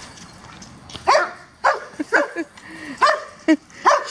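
Dogs barking: a run of about seven short barks, roughly two a second, starting about a second in.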